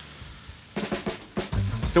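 Background music with a quick drum fill, a run of rapid snare-like hits about a second in, followed by a low bass drum hit.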